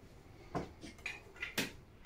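A few light clicks and knocks of vinyl figures and soda cans being shifted about on a display shelf, about five small taps spread through the second half.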